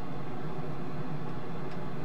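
Small solder fume extractor fan running steadily, an even whir with a low hum.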